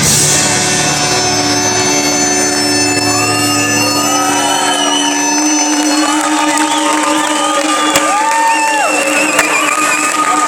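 Folk-rock band with Galician bagpipes ending a song live: a held final chord rings out, the low end drops away about five seconds in, and the crowd shouts and cheers over a lingering steady tone.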